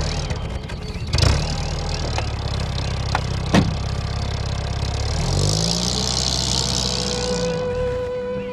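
A Mercedes-Benz sedan's door shuts with a thump about a second in, and a second sharp knock follows a couple of seconds later. The engine runs steadily, then revs up about five seconds in as the car pulls away.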